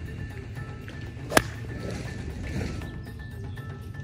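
A single crisp strike of an iron clubface on a golf ball, about a second and a half in, heard over background music.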